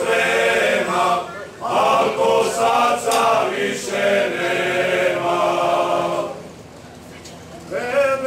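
A group of men singing a Croatian folk song together in full voice, unaccompanied, in long held phrases with a short breath break after about a second. The phrase ends about six seconds in, and the next one starts with an upward slide near the end.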